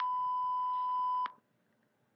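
A single steady electronic beep, about a second and a quarter long, that cuts off cleanly. It is the cue tone between dialogue segments in an interpreting practice recording, marking the end of a segment and the interpreter's turn to speak.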